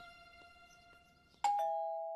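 Two-tone doorbell chime, a ding-dong about one and a half seconds in: a higher note, then a lower one held and slowly dying away.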